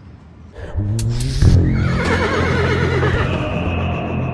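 A horse whinnying, a long wavering call, over music with a steady low bass that starts about half a second in.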